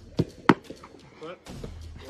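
Two sharp thuds about a third of a second apart, the second the louder, followed by lighter taps: the sounds of a goalkeeper footwork drill, with a football and quick steps on artificial turf.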